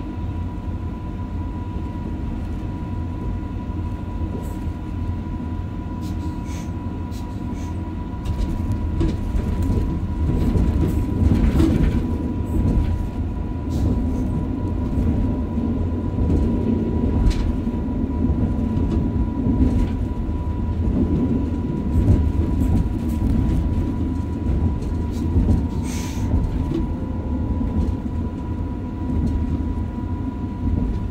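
Passenger train running along the track, heard from the driver's cab: a steady low rumble with a thin steady high tone and scattered clicks, growing louder about eight seconds in.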